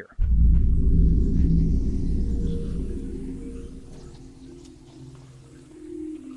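A cinematic low boom hit that starts sharply and fades into a low rumbling drone over several seconds: a dramatic sting sound effect.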